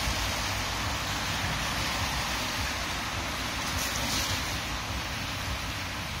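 Steady outdoor street noise: a constant hiss and low rumble of passing traffic.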